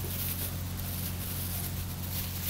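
Steady low hum over an even background hiss, with no distinct events.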